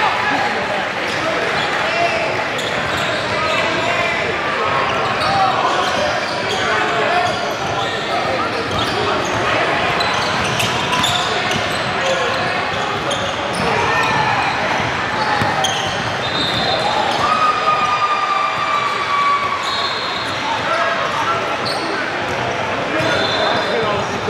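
Basketball game in a large gym: a ball bouncing on the hardwood court amid players' footwork, over steady crowd chatter and shouts that echo in the hall.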